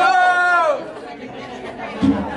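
A single high-pitched voice calls out one drawn-out cheer that rises and falls, then quieter audience chatter.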